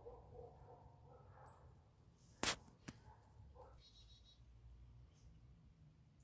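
Quiet outdoor background broken by a sharp click about two and a half seconds in, with a smaller click just after it.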